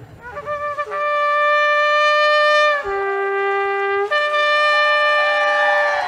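A shofar is blown in one long call. A few short sputters come as the blast starts, then a steady high note is held for about two seconds. It drops to a lower note for about a second, then climbs back to the high note.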